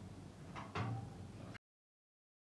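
Scissors cutting through silk fabric, with a couple of short snips about half a second and three-quarters of a second in. The audio then cuts off suddenly to dead silence.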